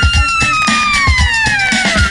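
Background music with a steady drum beat and one long held note that slides slowly down in pitch.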